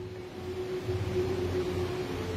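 A steady low mechanical hum with a faint thin held tone above it.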